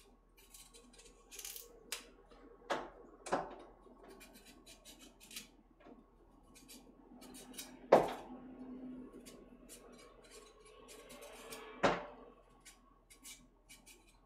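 A carrot being peeled by hand at the kitchen sink: light scraping strokes and small clicks, broken by a few louder knocks, the loudest about eight and twelve seconds in.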